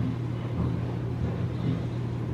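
A laundry machine running in the home, heard as a steady low hum and rumble.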